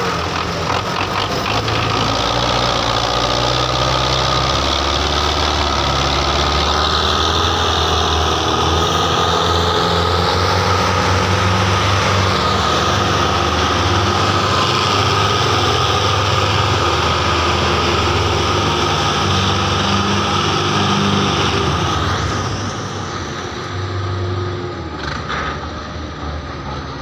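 Belarus tractor diesel engines running hard under load as a heavily loaded sugarcane trolley is pulled, putting out black exhaust smoke. The engine sound is loud and steady and eases off somewhat near the end.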